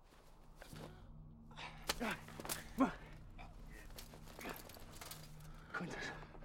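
A man gasping and grunting in short strained breaths as he struggles out from beneath a pile of armoured bodies, with scattered rustles and knocks of armour and leaves. A low steady hum comes in about a second in.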